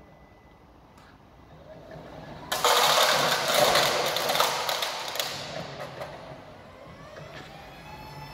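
Steel washers clattering up onto a forklift-mounted magnetic sweeper bar as it runs over them: a dense metallic rattle that starts suddenly about two and a half seconds in and fades over the next few seconds. Underneath, the forklift's motor whine rises slowly in pitch as it drives forward.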